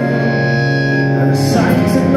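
Live rock band playing through a club PA: electric bass and guitars hold a sustained chord, then the music changes to a fuller, busier section about one and a half seconds in.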